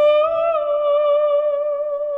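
Soprano voice holding one long sustained note with a light vibrato, in a slow classical art song, with a quieter lower tone held beneath it.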